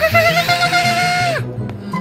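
A cartoon little girl's voice crying out in one long, high wail that rises, holds with a slight wobble for about a second and a half, then breaks off. Background music with a repeating bass line plays underneath.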